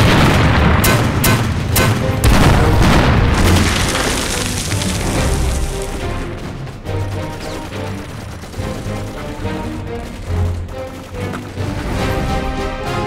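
Mortar shells exploding over the first few seconds. The blasts die away under dramatic background music with long held low notes.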